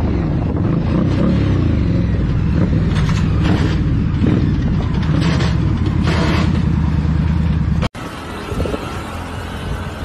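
Motorcycle engine running at highway speed with road and wind noise, with several short rasping bursts in the middle, around the time another motorcycle goes down and slides along the road. About eight seconds in, the sound cuts off abruptly and gives way to quieter, steadier road noise.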